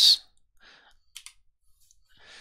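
A pause with a faint soft breath, then two quick small clicks close together about a second in.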